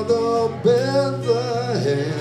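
A man singing a slow song, accompanied by a strummed acoustic guitar, in a live performance.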